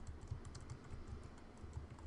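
Typing on a computer keyboard: a quick run of faint keystrokes as a word is entered.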